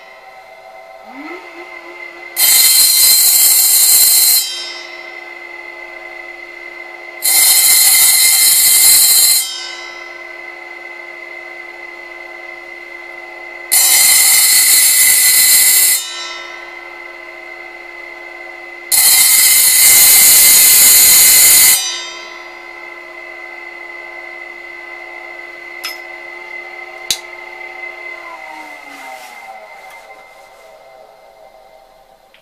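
Brushless motor of a DIY power hone spinning up about a second in and humming steadily while a small blade is pressed four times against its 200 mm diamond disc, each pass a loud grinding hiss lasting two to three seconds. Near the end the motor winds down, its hum falling in pitch.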